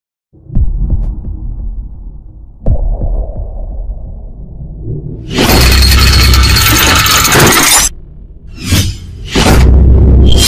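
Cinematic intro sound design: two deep booms that each fade out, then a long, loud crashing, shattering burst about five seconds in, followed by two short bursts and another loud crash near the end, with music.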